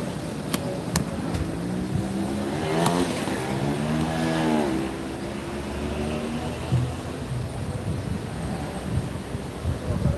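A motor vehicle driving past: its engine hum swells and bends in pitch from about three seconds in, then fades. There are a couple of sharp clicks in the first second.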